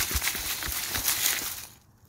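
Dry leaves rustling and crackling in a quick run of small crisp clicks, dying away near the end.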